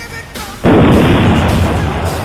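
Loud edited-in sound effect for a cartoon web-shot: a sudden noisy blast about half a second in that slowly fades, over background music.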